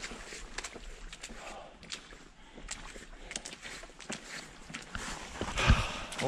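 Footsteps on the forest floor, an irregular scatter of small crackles and snaps from leaf litter and twigs underfoot, with a louder rustle near the end.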